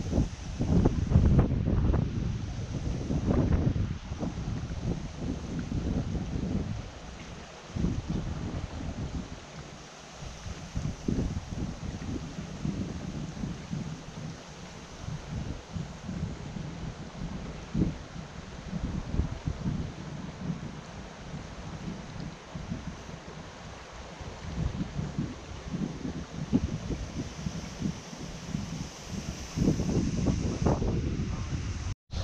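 Wind buffeting the microphone in uneven gusts, strongest in the first few seconds, over the faint steady rush of a shallow flowing stream.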